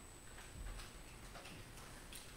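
Quiet room with faint, irregular light clicks and taps from small communion cups being handled and drunk from.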